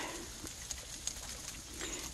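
Quiet outdoor background with a few faint, high bird chirps, one short rising chirp near the end.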